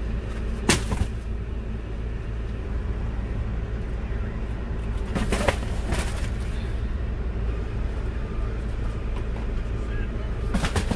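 Cardboard boxes of baby wipes knocking and thudding as they are loaded into the back of a van: a pair of knocks about a second in and a few more around the middle, over a steady low rumble.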